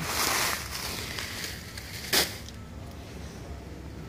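Plastic packets of expanded clay pebbles rustling as they are picked up and handled: a burst of rustling at the start and one short sharp rustle about two seconds in.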